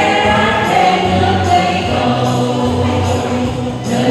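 A mixed group of men's and women's voices singing a Vietnamese song together into microphones, with held notes, accompanied by acoustic guitar.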